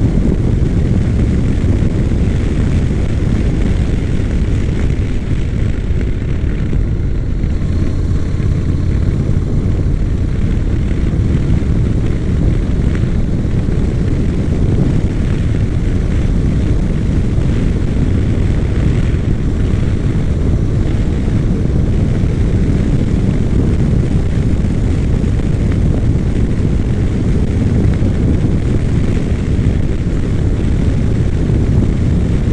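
Honda NC700X motorcycle's parallel-twin engine running at a steady cruise under a heavy, constant rush of wind over the microphone.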